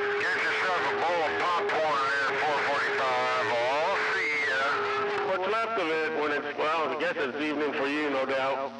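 A man's voice received over a CB radio, garbled and hard to make out, with a steady whistle tone under it for the first five seconds or so.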